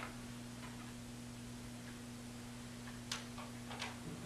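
Steady low electrical hum with faint room hiss, and a couple of short, faint ticks near the end from a dry-erase marker on a whiteboard.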